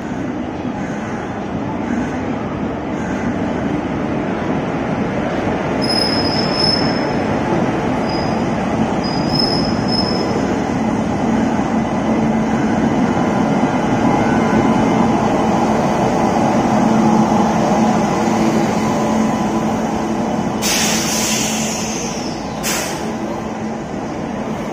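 Express train rolling slowly past at a platform, electric locomotive followed by its coaches: a steady rumble of wheels that grows louder and peaks about two-thirds of the way in. There are brief high squeals around a quarter to halfway in, and a loud hiss near the end.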